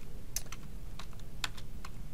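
Computer keyboard arrow keys pressed one at a time: a handful of separate, irregularly spaced key clicks.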